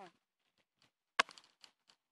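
A dog's single short bark, falling in pitch, right at the start. It is followed about a second in by a sharp knock and a few light ticks.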